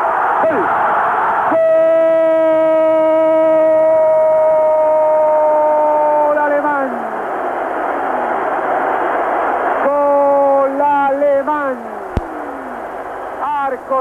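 A Spanish-language TV commentator's long, drawn-out 'gooool' cry for a goal. It is held for about five seconds and falls in pitch at the end, then comes a second shorter cry, over steady stadium crowd noise. The sound is thin and narrow, as from an old TV broadcast.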